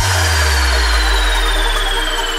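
Nightcore electronic dance music at a breakdown: the drums drop out and a deep bass note is held under a sustained synth chord, while a thin high sweep slowly falls in pitch.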